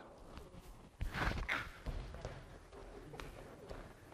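A man's brief exclamation about a second in, then soft footsteps and shuffling on a gym mat as two people step apart.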